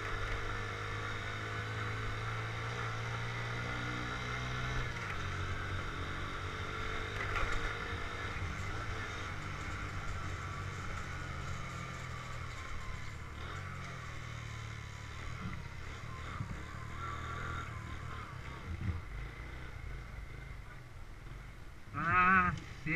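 Small motorcycle engine running at low street speed, heard from an on-board camera with road and wind noise. Its pitch slowly falls about halfway through, as it slows.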